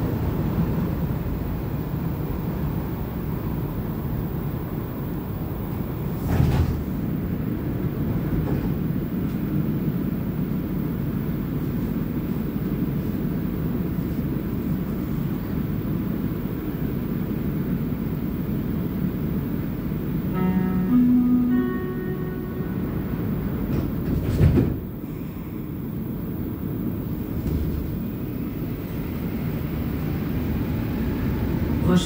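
Interior of a moving Montreal Metro Azur rubber-tyred train: a steady rumble of the running train. There are sharp knocks about six seconds in and again near 24 seconds, and a short two-note electronic chime shortly before the second knock.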